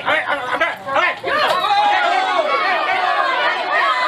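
Several people's voices talking over one another, loud and continuous.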